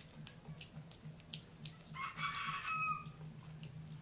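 A chicken calls once, a pitched call of about a second that breaks off about three quarters of the way through, most likely a rooster crowing. Sharp clicks from eating crisp raw green mango run throughout, over a low pulsing hum.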